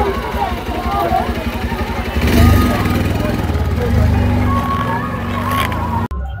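Indistinct voices over a steady low rumble like a running engine, which swells in the middle.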